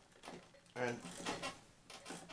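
Faint clicks and knocks of a hand handling the works of a small wind-up cylinder phonograph, with one short spoken word.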